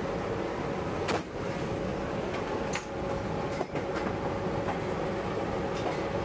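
Steady drone of the AC-130J's four turboprop engines heard inside the cargo hold, with a constant hum over the rumble. About five sharp metallic clicks and knocks from the gun equipment being handled cut through it.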